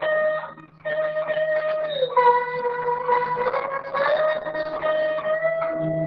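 Acoustic guitar laid flat and played lap-style with a slide: a slow, sustained melody whose notes glide smoothly from one pitch to the next. There is a brief break in the sound just under a second in.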